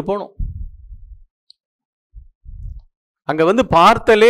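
A man speaking through a headset microphone. He pauses for about two seconds in the middle, and the pause is broken only by a few short, low, muffled sounds close to the microphone.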